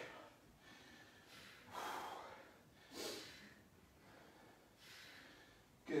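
A person breathing hard from exertion during a set of dumbbell rows. Two forceful exhales come about two and three seconds in, with fainter breaths around them.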